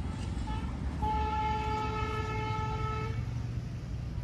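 A vehicle horn: a short toot, then one steady blast held for about two seconds.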